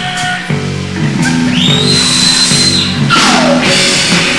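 A garage-punk band playing live, with distorted electric guitar chords and drums. About a second and a half in, a high held note rises in and holds, then just after three seconds a swooping note falls away.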